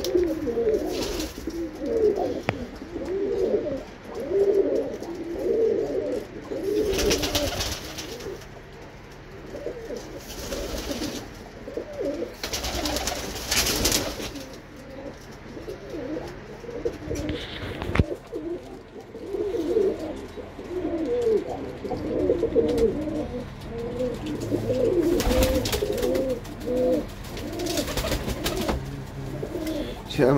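Several Birmingham Roller pigeons cooing, their coos overlapping almost without pause, with a few brief rustling sounds mixed in.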